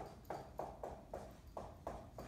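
Dry-erase marker writing on a whiteboard: a run of short strokes, about four a second.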